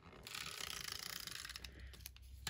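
Tape runner drawn along the back of a paper strip, laying down dry adhesive: a faint, fast ratcheting rasp from the dispenser's reel lasting about a second and a half.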